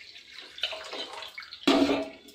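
Liquid pouring from an aluminium pan through a plastic strainer into a steel wok. Near the end, a loud metallic clank as a metal pan is set down.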